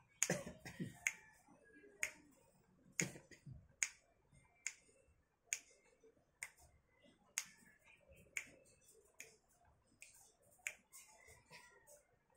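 Finger snaps keeping a slow, steady beat, about one a second, faint against a quiet room.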